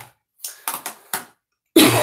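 A woman coughing into her fist: a few small coughs, then two or three louder coughs near the end.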